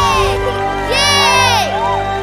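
A group of children shouting and cheering in two bursts, the second about a second in, over background music with steady held notes.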